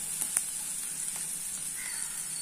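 Sliced onions, diced carrots and green chillies frying in oil in a non-stick pan: a steady sizzle, with a few light clicks of the spatula against the pan in the first half.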